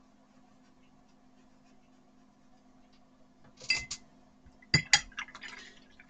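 Paintbrush being rinsed in a glass water jar: a brief swish of water about three and a half seconds in, then two sharp clinks of the brush against the glass near the five-second mark, followed by a few lighter taps.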